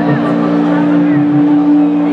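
Electronic backing music from a live set: a synthesizer drone held on steady low notes, with a soft low pulse about twice a second underneath.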